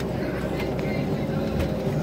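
A boat's motor running steadily, a low, even hum.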